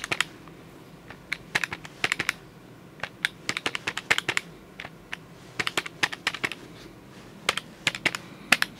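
Keys of an electronic desk calculator being pressed, several quick runs of sharp clicks with short pauses between them.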